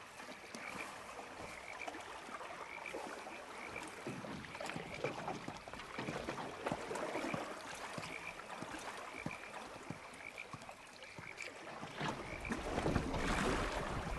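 Faint night-time ambience of a frog chorus, a steady train of short chirping calls, with light scattered clicks and rustles. A low rumble swells near the end.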